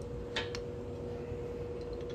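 Two quick hard clicks about half a second in, then a few faint ticks near the end, as a punched coin and a tool are handled on the bench, over a steady hum.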